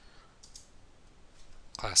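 Faint clicks of a computer keyboard being typed on, a few scattered keystrokes.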